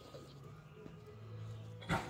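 A single short, loud animal sound near the end, over faint background music.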